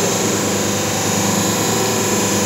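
Hydraulic power pack (electric motor and pump) of a semi-automatic paper plate making machine running with a steady hum.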